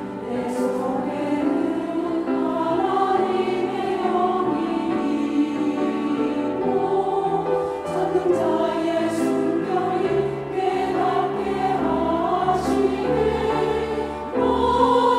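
Women's church choir singing a slow hymn in Korean, in parts, with long held notes.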